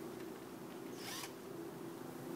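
Honeybee swarm buzzing, a faint steady hum, with a short rustle about a second in.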